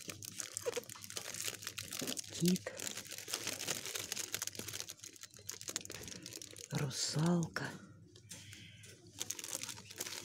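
Thin plastic packaging crinkling and rustling as it is handled, thickest in the first half. Two short voice sounds break in, a brief one a couple of seconds in and a longer one around seven seconds.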